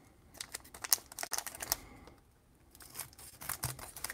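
Foil booster packs being handled and snipped open with scissors: a run of short clicks and crinkles in two clusters, with a brief pause about halfway through.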